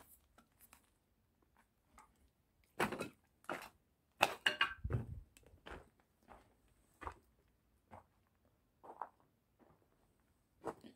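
Footsteps on a rubble- and debris-covered floor: irregular crunches and thuds about once a second, loudest around four to five seconds in.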